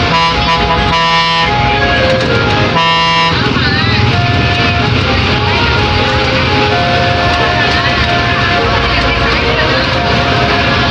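A bus air horn sounds one long steady blast that stops about a second and a half in, then a short second blast around three seconds in. After that the bus engine runs under music with a singing voice.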